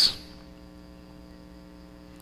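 Faint, steady electrical mains hum on the recording, a low drone made of several level tones held without change.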